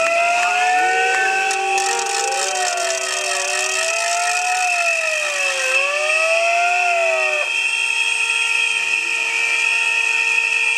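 Protesters' noisemakers: a pitched siren-like tone swooping up and down in slow arcs several times, stopping about seven and a half seconds in, over steady shrill whistling, with a rattling noise in the first half.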